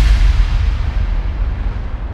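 Tail of a deep cinematic boom sound effect: a loud low rumble that slowly fades away.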